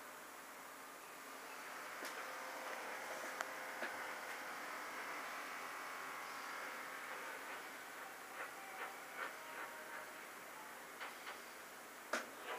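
Steady mechanical noise from nearby construction work on a lift, with a few light clicks in the last few seconds.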